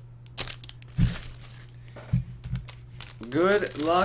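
Trading-card packaging and cards being handled: plastic crinkling and rustling with a few soft knocks about one and two seconds in. A man's voice starts near the end.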